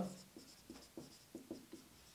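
Marker writing on a whiteboard: a quick run of short, faint strokes as a word is written.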